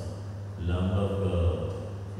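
A priest's voice reciting a prayer in a low, level monotone close to chanting, picking up again about half a second in.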